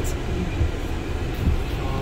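Steady low rumble inside a work van's cabin with its engine running.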